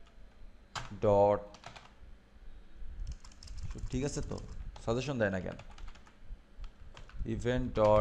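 Computer keyboard typing: scattered keystroke clicks with a quick flurry in the middle, between short bits of a man's voice.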